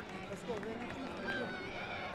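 Faint distant voices of people at the pitch side over outdoor background noise, with no loud event.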